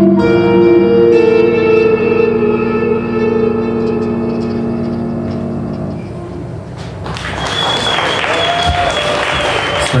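A held electric guitar and keyboard chord ends a live rock song, ringing on and fading over several seconds. Audience applause breaks out about seven seconds in, with a long high whistle over it.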